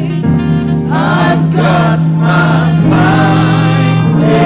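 Gospel singing with sustained instrumental accompaniment: voices carry a slow melody over held bass notes.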